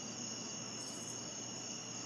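Steady evening chorus of crickets, a continuous high-pitched chirring with no break.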